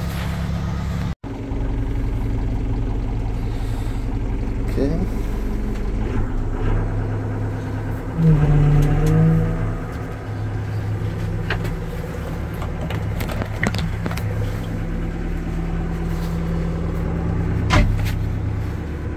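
Komatsu WB-150AWS backhoe's diesel engine running steadily. For a second or two near the middle it gets louder and takes on a steadier tone as the boom hydraulics are worked.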